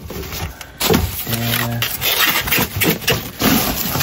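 Plastic bag and foam wrapping rustling and crinkling in irregular bursts as a boxed alloy wheel is unwrapped by hand.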